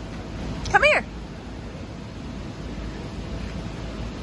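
One short, high-pitched vocal squeal that rises and falls in pitch about a second in, over the steady background hum of a large indoor play venue.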